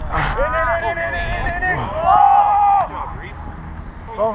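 Men's voices shouting two long, drawn-out calls across an open field, the second the loudest. A low wind rumble on the microphone runs underneath.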